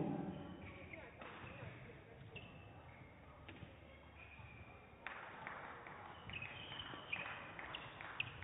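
Faint sounds of badminton play on an indoor court: a sharp racket-on-shuttlecock hit about five seconds in, then shoes squeaking on the court floor as the rally runs on.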